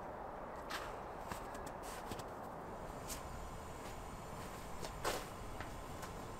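Footsteps crunching in snow: a few irregular, crisp steps, the loudest about five seconds in, over a steady low background hiss.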